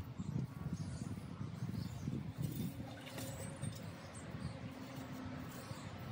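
Shovel digging and scraping in soil around the roots of a young olive tree as it is dug up, with a couple of sharper scrapes near the middle.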